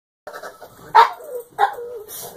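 Pug barking twice in quick succession, about a second in and again half a second later. Each bark trails off into a short falling whine as the dog begs for a treat.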